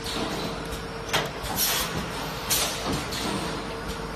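Automatic plastic ampoule forming, filling and sealing machine running: a steady mechanical hum with a few short, sharp hisses a second or less apart.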